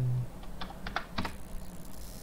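Computer keyboard keys being tapped: a quick run of about half a dozen keystrokes entering a number into a value field, then a pause.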